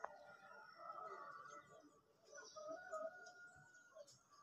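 Faint birds chirping and calling in the open air, with short, thin, high calls scattered throughout.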